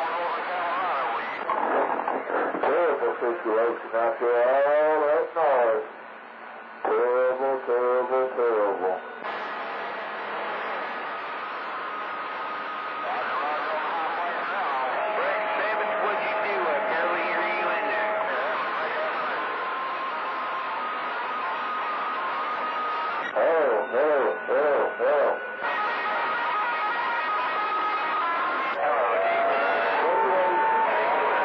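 CB radio receiver on channel 28 picking up distant skip: a hissy, narrow AM signal carrying warbling, wavering voice-like sounds in the first nine seconds and again near the end, and several steady whistling tones through the second half.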